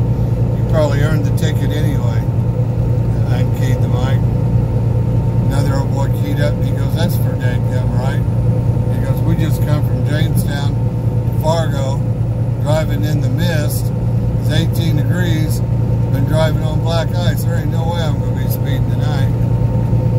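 Steady low drone of a semi truck's engine and road noise inside the cab while driving on the highway, with a person's voice talking on and off over it.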